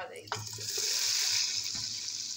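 Smoking-hot tadka oil with curry leaves poured from a pan onto cooked chana dal, setting off a loud sizzle. It starts about a third of a second in, is strongest around a second in, then eases a little.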